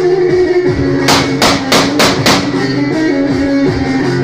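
Live Turkish folk music: a plucked bağlama and oud with an electronic keyboard playing a steady tune. About a second in come five sharp, evenly spaced strikes in quick succession.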